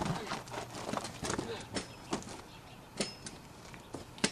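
Irregular clicks and knocks, a few a second, from a BMX bike as two riders climb on and push off together.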